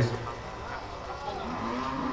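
Crowd chatter around cattle, with a low, steady moo from a bovine starting about one and a half seconds in and held to the end.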